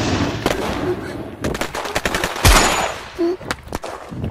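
Rapid gunfire: a fast run of many shots in close bursts, with the loudest shot about two and a half seconds in.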